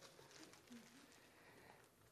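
Near silence: a pause between speech, with only faint room tone.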